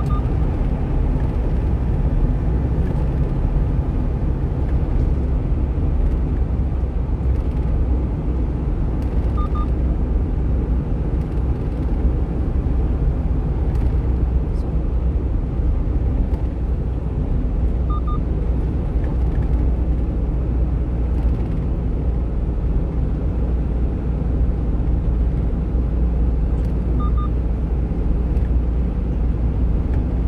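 Steady engine and road rumble inside the cab of a 1-ton refrigerated box truck driving at expressway speed. A short high double beep sounds three times, about nine seconds apart.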